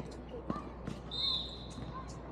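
Basketball bouncing on a court: two thumps about half a second apart, followed a little after one second in by a brief high-pitched squeal.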